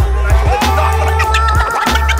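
Hip hop beat with DJ turntable scratching over a heavy, repeating bass line.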